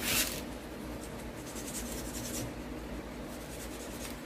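Small plastic model-kit parts being handled and fitted together: a short scraping rub right at the start, then faint rubbing and handling noise.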